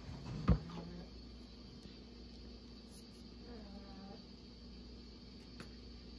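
A single sharp knock about half a second in, from something handled close to the microphone, then quiet room tone with a faint low hum, a brief soft murmur of a voice around the middle and a small click near the end.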